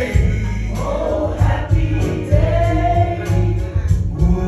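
A man singing a gospel song into a microphone, with long held notes, accompanied by an electric keyboard holding steady low chords underneath.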